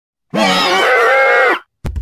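A loud, drawn-out shouted "me", held for over a second with a wavering pitch, starting and cutting off abruptly after dead silence. Just before the end, a low rumble with sharp clicks begins.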